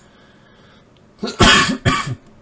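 A person coughing twice in quick succession, starting about a second and a half in, after a quiet pause.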